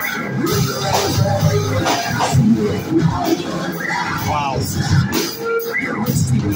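A live band playing loud amplified music on electric guitar, bass guitar and drum kit, with steady drum hits throughout.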